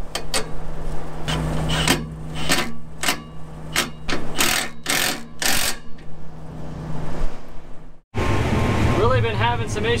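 Irregular metallic clanks, knocks and scrapes as a replacement wind tube is fitted on a combine header's reel, over a steady engine hum. About eight seconds in, the sound cuts to a combine running in the field.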